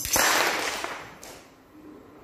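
A short burst of audience applause in a hall. It starts with a sharp crack and dies away over about a second and a half.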